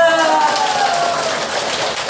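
A roomful of people clapping, with a voice calling out one long note that falls in pitch over the applause during the first second or so.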